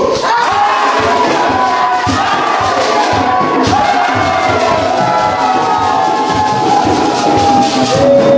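A church congregation shouting and singing in worship all at once, many voices overlapping, over a steady beat of drums.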